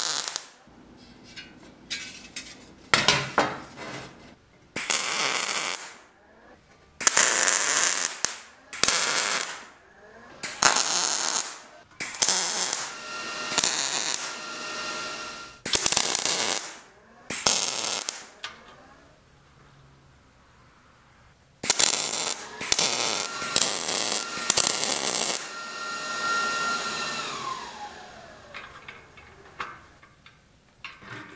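MIG welder laying short steel welds: a dozen or so separate bursts of crackling arc noise, each a second or so long, with short pauses between. Near the end a steady whine joins in, then falls in pitch as it dies away.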